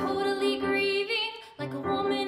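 A woman singing a musical-theatre song with vibrato, accompanied by piano. The phrase breaks off briefly about a second and a half in, and the next one begins.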